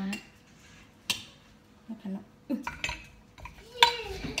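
Wooden pestle knocking in a clay Thai mortar (krok) as ingredients for papaya salad are pounded, a few strikes in the second half with the loudest just before the end. A single sharp click comes about a second in.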